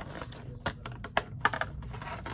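Clear plastic dome lid of a takeout breakfast tray being pried open: a run of sharp plastic clicks and crackles, the sharpest a little past a second in.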